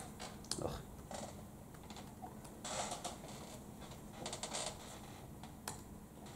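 Computer keyboard typing: scattered key clicks, with two short runs of quick keystrokes about three and four and a half seconds in.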